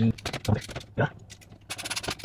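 Screws and a screwdriver being worked at a graphics card's metal mounting bracket in a PC case: a scatter of small metallic clicks and scrapes, with a quick run of clicks near the end.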